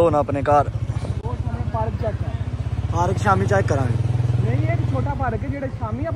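A small motorcycle engine running with a steady, fast low pulse. It gets louder between about three and five seconds in, then eases back.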